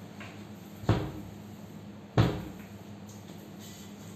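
Wooden kitchen cabinet doors knocking shut twice, about a second and a half apart, the second knock louder.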